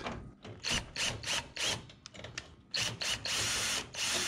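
Cordless drill driving an 11/32 socket on an extension to loosen a bolt: a string of short, stuttering bursts, then a steady run of about a second near the end.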